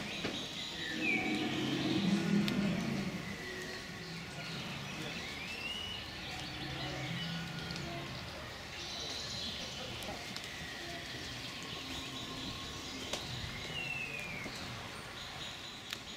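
Wild birds calling in woodland: a few short chirps that bend up and down in pitch, heard over steady outdoor background noise. Faint distant voices come through in the first few seconds.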